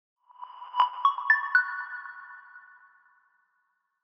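Short electronic logo jingle: four quick chime-like notes struck in succession, each ringing on and overlapping the next, then fading away about two seconds in.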